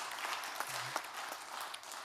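Applause in a church: hand clapping from the pastor and congregation.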